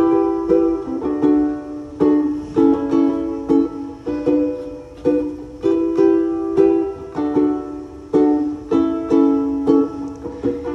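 Ukulele strummed in a steady, repeated chord pattern, each strum ringing and fading before the next: the instrumental introduction to a song, before the singing comes in.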